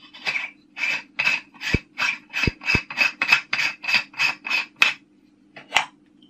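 Metal screw threads rasping as a threaded T2 filter adapter is twisted by hand onto the end of a telescope: a quick, even run of scraping turns, about three to four a second, with a few dull knocks, then one last scrape near the end. The threads are long, so it takes many turns.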